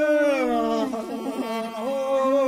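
Male voice singing Mongolian long song (urtiin duu): a held note falls in a long glide, breaks into rapid ornamental wavers, then climbs back up near the end.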